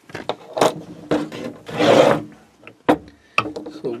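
Handling noise of a Zippo lighter insert and case being set down on a table: several light clicks and knocks, with a longer rubbing scrape about two seconds in that is the loudest sound.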